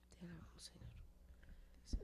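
Faint, quiet speech, almost a whisper, with a short sharp click near the end.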